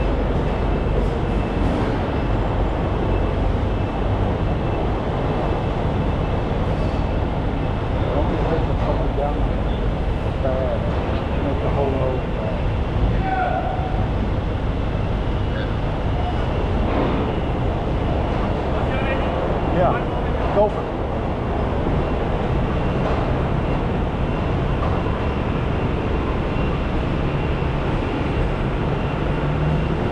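Heavy machinery runs with a steady low drone as the tanker loads oily water, most likely the truck's engine driving the loading pump. Two brief knocks stand out about two-thirds of the way through.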